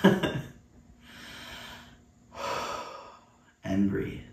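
A short laugh, then two long breaths, the second louder, taken while holding a seated yoga shoulder stretch, and a brief voiced sound near the end.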